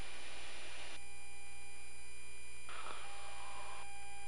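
Steady electrical hum with faint constant tones, the background of the cockpit audio feed between calls. A soft hiss briefly rises near the end.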